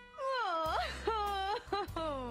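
A woman wailing in exaggerated comic crying: three drawn-out sobbing cries that slide down and up in pitch, the last starting near the end.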